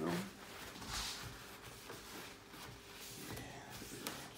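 Paper tissue wiping spilled paint off a wooden tabletop: soft rustling and rubbing, with one brief louder swish about a second in.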